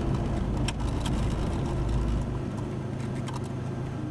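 Car driving, heard from inside the cabin: a steady engine and road hum with a few light clicks. The deep rumble drops away about halfway through.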